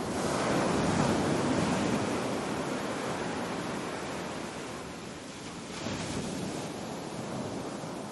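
Small waves washing onto a sandy beach, swelling about a second in and again near six seconds.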